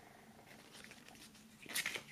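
Quiet handling of a paper CD booklet: faint soft rustles, then a louder brief rustle of pages being turned near the end.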